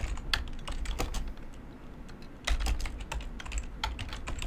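Typing on a computer keyboard: irregular key clicks, thinning out for about a second in the middle, then a quicker run of keystrokes.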